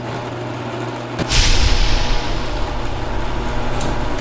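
Intro sound effects over animated titles: a low rumbling drone with a booming impact about a second in, its hissing tail fading away over the next second.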